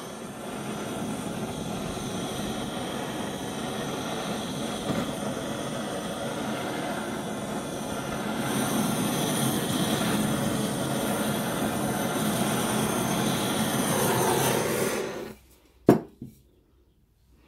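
Handheld electric hot-air blower running steadily over freshly poured acrylic paint to bring up cells, growing louder about halfway through as it comes closer. It cuts off sharply near the end and a single click follows.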